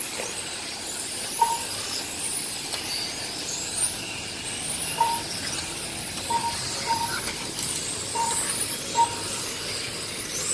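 Radio-controlled touring cars racing past, their motors whining in overlapping glides of pitch that rise and fall as they speed up and brake. Short beeps at one pitch come about seven times, fitting a lap-timing system as cars cross the line.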